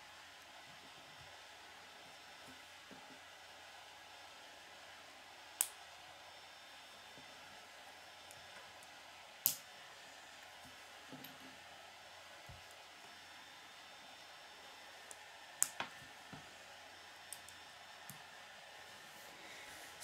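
Small Lego plastic pieces pressed together by hand: two sharp snaps about four seconds apart, then a few lighter clicks later on. A faint steady hiss lies underneath.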